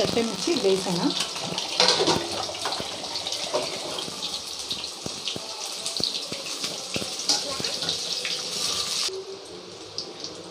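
Chicken kebabs deep-frying in hot oil in a steel kadai: a steady, dense sizzle full of fine crackles, with a few sharp metal clinks. The sizzle drops off suddenly about nine seconds in.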